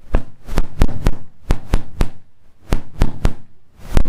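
A quick, uneven series of about a dozen loud, sharp bangs, roughly three a second. It is an unexplained noise that startles the preacher.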